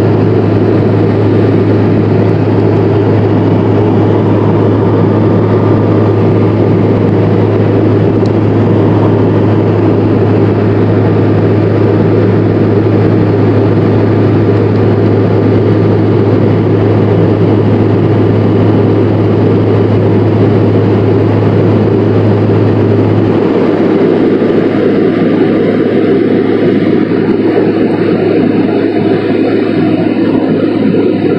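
Airliner cabin noise in flight: the steady, loud rush of the jet engines and airflow heard from a window seat. A low drone underneath drops away suddenly about three-quarters of the way through while the rush goes on.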